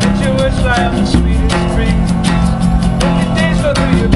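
Live acoustic music: an acoustic guitar strummed and a djembe hand drum keeping a steady beat, with a man's voice singing over them.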